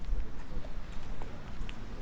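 Footsteps of several people walking on a paved street, heard as scattered short clicks of shoes and sandals over a low rumble.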